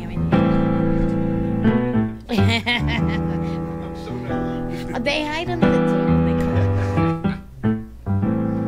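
A recorded song: sustained piano chords with a woman singing over them in two short phrases, about two seconds in and again about five seconds in, her voice wavering in vibrato.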